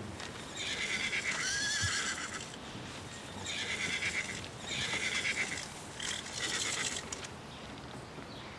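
A carriage horse whinnying in four bursts of about a second each.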